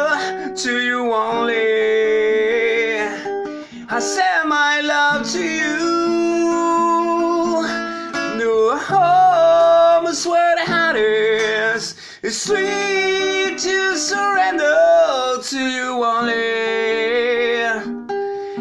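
A man singing long, wavering held notes while strumming an acoustic guitar.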